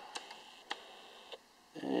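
Quiet room with three faint, sharp clicks spread through a pause; a man starts talking near the end.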